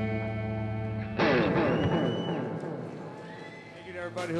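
A live punk band's electric guitars hold a ringing chord, broken about a second in by a sudden loud burst whose pitches slide downward as the song ends. A brief high whistle follows, and the sound fades away.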